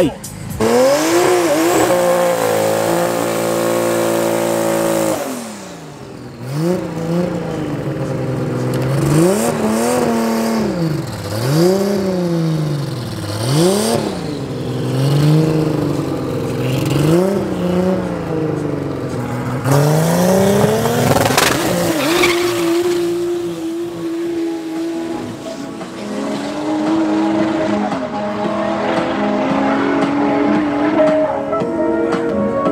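Drag-race car engines. First a car running at high, held revs down the strip, fading about five seconds in; then a turbocharged drag car revved up and down repeatedly at the start line, a sharp crack, and a hard run with step changes in engine pitch as it goes through the gears.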